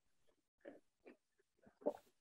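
A person drinking from a mug: four short, faint gulping sounds, the loudest near the end.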